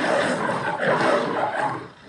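A lion's roar, played as a recorded sound effect: one long rough roar that fades out near the end.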